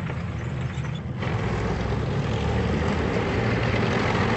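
Engines of military vehicles running steadily, getting louder about a second in.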